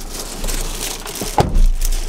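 Rustling of a shopping bag and handling noises in a car cabin as a person climbs into the seat, with a heavy thump about one and a half seconds in.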